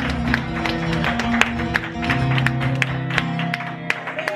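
Live acoustic guitar playing held chords while a crowd of people claps along with many sharp, irregular hand claps.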